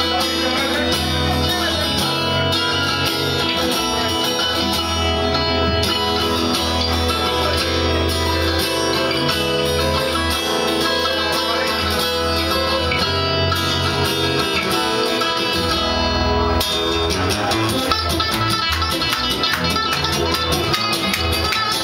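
A small live acoustic band playing: strummed and picked guitars over an upright double bass. In the last few seconds the strumming gets busier and more driving.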